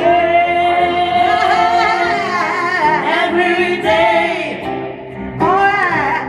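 Live gospel singing into microphones: voices hold long notes and slide through runs, easing off briefly about five seconds in before coming back.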